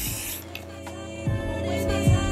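A short hiss of a fine-mist water spray bottle misting hair, lasting about a third of a second at the start, over background music that carries on throughout.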